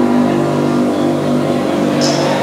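Keyboard music holding a steady, sustained chord.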